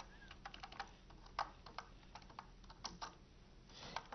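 Typing on a computer keyboard: faint, irregular key clicks, a few a little louder than the rest.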